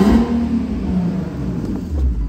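2015 Infiniti Q50's 3.7-litre V6 engine in a quick throttle blip, peaking right at the start and falling back toward idle over about a second and a half, showing a nice throttle response.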